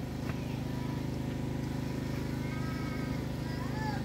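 A steady low hum with many overtones, like a motor or electrical hum, with faint rising and falling whistles in the second half.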